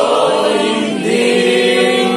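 Voices of worshippers singing unaccompanied in long held notes. The pitch steps up to a new held note about a second in.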